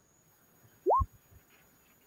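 A short electronic "bloop" about halfway through: a single clean tone sweeping quickly upward and ending in a soft low thump, like a computer sound effect.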